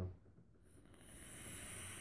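A long drag on a mechanical vape mod: a steady hiss of air drawn through the atomizer as the coil fires. It starts about half a second in and holds without a break.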